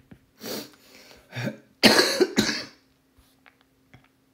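A person coughing: a run of four coughs, a lighter one about half a second in, then harder ones, the loudest two about halfway through.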